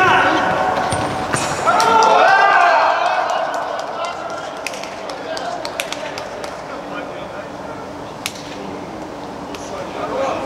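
Futsal players shouting in an indoor sports hall as a goal is scored, loudest in the first three seconds. This is followed by quieter calls and scattered sharp knocks of the ball and shoes on the hard court.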